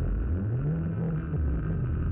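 A deep, low electronic drone from a synthesized soundtrack, with a low tone that sweeps up and then falls back down over about a second.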